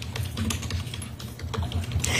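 Soft, irregular clicking like typing on a keyboard, over a low steady hum.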